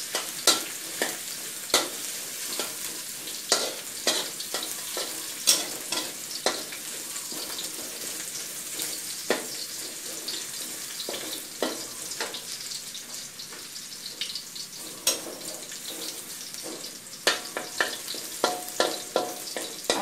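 Chopped garlic sizzling in hot oil in a steel wok, with frequent sharp clicks and scrapes of a metal spatula stirring it against the pan.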